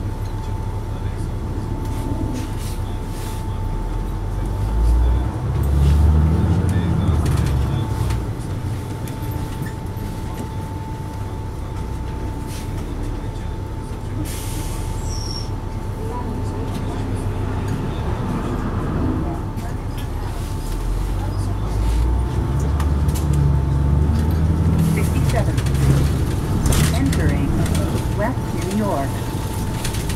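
Interior of a 2004 Neoplan AN459 articulated bus under way: its Caterpillar C9 diesel rumbles steadily and swells twice, about five seconds in and again past twenty seconds, as the bus picks up speed. A thin steady whine and scattered clicks and rattles run over it.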